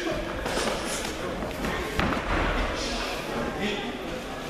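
A heavy thud about two seconds in as a fighter is thrown down onto the ring canvas, with a lighter knock at the start, over voices in the hall.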